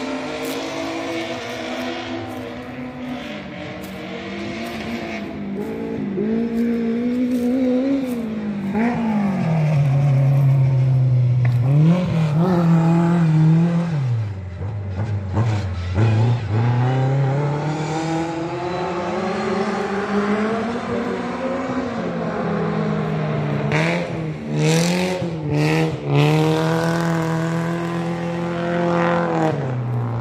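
A racing car's engine on a dirt track, revving up and down as it goes around the circuit. Its pitch climbs in steps as it accelerates, falls back for the corners, and drops lowest about halfway through before rising again.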